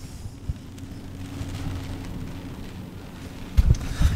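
Low steady rumble with a faint even hum inside a car cabin. Near the end comes a short low thump as the phone is handled.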